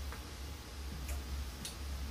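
Room tone in a lecture room: a steady low hum with a few faint, sharp ticks.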